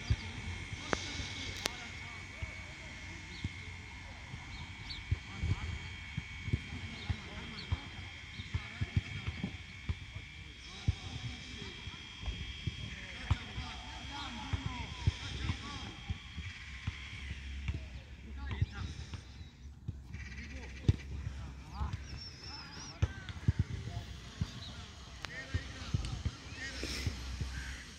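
Outdoor ambience: birds chirping, a steady high whine that stops about two-thirds of the way through, and many irregular soft thumps.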